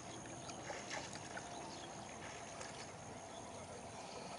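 River water rippling and lapping, with small splashes and ticks scattered through it.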